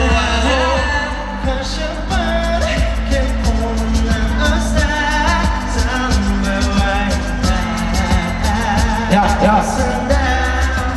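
Pop song performed live by a male vocal group, singing over a steady beat with deep bass and even hi-hat ticks that come in about two seconds in.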